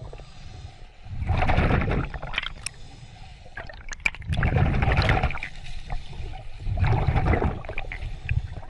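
Water sloshing and gurgling around a camera held at and just under the sea surface, in three noisy surges with quieter gaps between.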